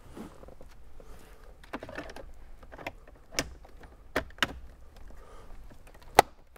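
Plastic dash side trim panels of a Toyota 4Runner being handled and pressed into place, with a scatter of sharp clicks and knocks as the clips seat; the loudest knocks come about three and a half and four and a half seconds in.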